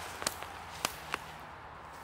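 Footsteps through dry fallen leaves on a forest floor, with four sharp snaps or cracks in the first second or so.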